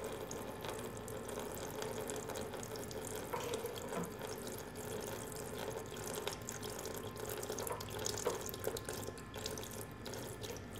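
Freshly pressed apple juice running in a thin stream from a cider press's drip-tray spout and splashing into the juice already collected in a plastic bin: a steady trickle with occasional drips.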